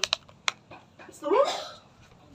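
A few short, sharp clicks in the first half second, then a woman asks a brief rising "Ito?".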